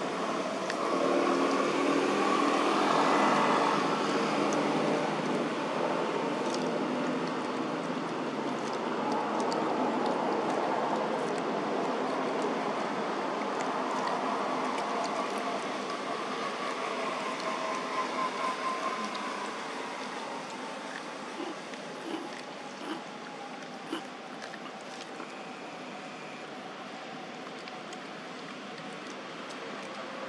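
Drone of a motor vehicle engine, loudest in the first few seconds, its pitch sliding slowly down through the middle stretch. A few short sharp clicks sound in the second half.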